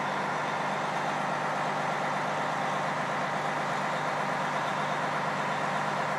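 A steady machine drone with a constant low hum under it.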